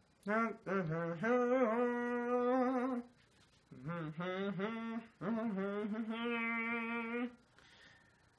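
A man humming a tune to himself: two phrases of long held notes with a slight waver in pitch, broken by a short pause.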